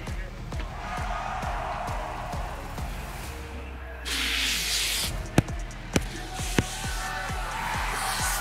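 Stadium music over a steady crowd wash. About four seconds in, a CO2 smoke jet fires: a sudden one-second burst of hiss. Three sharp knocks follow, about half a second apart.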